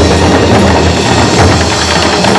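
Korean traditional percussion music: drums struck with sticks in a fast, dense, unbroken rhythm.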